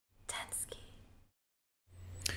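A person's faint, breathy vocal sounds over a steady microphone hum, cut off abruptly about a second and a quarter in, followed by dead silence.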